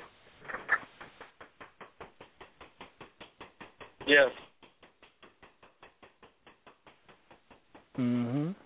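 Faint, evenly spaced clicking, about four clicks a second. A brief voice sound about four seconds in is the loudest thing.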